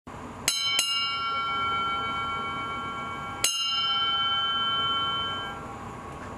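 Ship's bell struck twice in quick succession, then once more about three seconds later, each stroke ringing on for a few seconds over steady background noise. The paired-then-single pattern is the way a ship's bell strikes the time.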